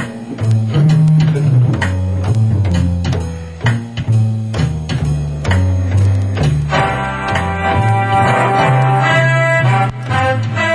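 Hammond Elegante XH-273 home organ playing a swing tune: a walking bass line on the pedals under the organ's built-in rhythm-unit drums. About seven seconds in, full sustained chords in a brass voice come in over it.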